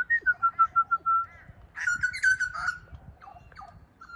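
Butcherbird singing: a run of clear whistled notes, then a louder, fuller phrase about two seconds in, then a few fainter notes.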